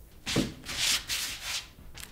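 Rubbing, scratchy strokes on paper: a short burst about a third of a second in, then two longer hissy strokes.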